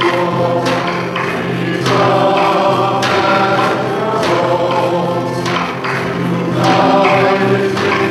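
Choir singing a processional hymn, with sharp accents on a regular beat a little slower than once a second.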